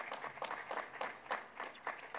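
Light applause from a small audience: a few pairs of hands clapping quickly and unevenly, thinning out near the end.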